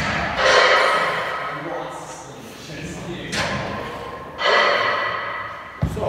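A man breathing hard in loud, gasping breaths after a maximal bench press, three long swells, with a single short thud near the end.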